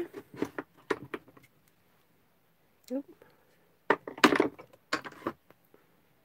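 A rubber stamp and a clear acrylic stamping block being handled on a craft desk: a few light clicks, then a cluster of louder knocks and taps about four seconds in.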